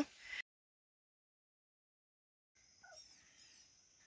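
Near silence: a stretch of dead silence, then a faint outdoor background with a few faint bird chirps in the last second and a half.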